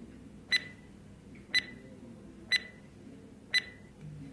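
Quiz countdown-timer sound effect: four sharp clock-like ticks evenly spaced about one second apart, each with a brief high ring.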